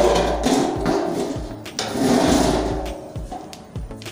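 Scraping and rubbing handling noise from a satellite dish's LNB arm being worked into place against the dish, in two stretches: one at the start and one about two seconds in.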